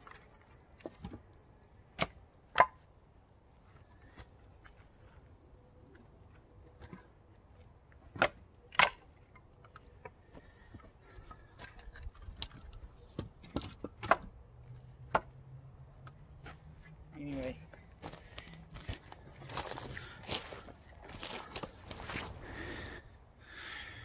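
Split madrona firewood pieces clacking against each other as they are set onto a stack, a few sharp wooden knocks spaced a few seconds apart. Near the end comes a longer stretch of rustling and scuffing.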